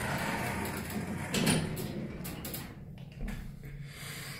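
ThyssenKrupp hydraulic elevator's sliding doors closing, with a thud about a second and a half in, over a steady hum inside the car. A low rumble comes in near the end as the car gets under way.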